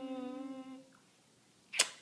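A woman's voice holding one long, steady hum that trails off a little under a second in. Near the end comes a short, sharp noise.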